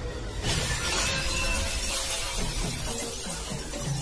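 A sudden crash of shattering glass about half a second in, over the film's background music.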